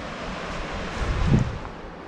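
Steady rushing of a small creek waterfall, with a brief low buffet of wind on the microphone about a second in.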